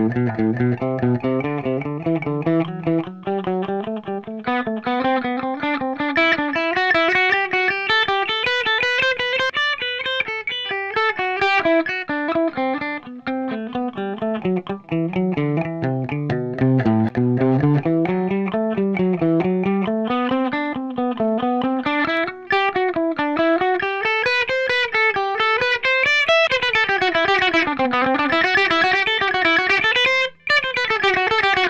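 Electric guitar playing a fast, even stream of single picked notes: a scale sequence played with alternate picking. It climbs from the low notes over the first third, then weaves up and down in repeating patterns.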